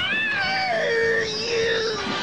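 A young man's long, drawn-out scream, "Aaaarrrggghhh", that jumps up in pitch at the start and then slides slowly downward as it is held.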